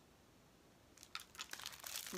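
Makeup brushes and their clear plastic sleeves being handled: a quiet first second, then a few light clicks and a plastic crinkling rustle.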